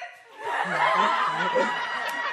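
A roomful of young people laughing together, breaking out about half a second in and staying loud.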